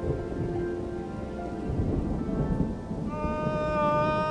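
A low rumble like distant thunder. About three seconds in, a man's long, high-pitched held scream begins.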